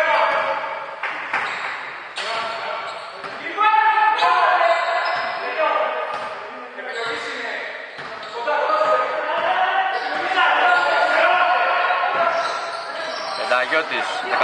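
Basketball bouncing on a wooden court in an echoing sports hall, with players' voices calling out.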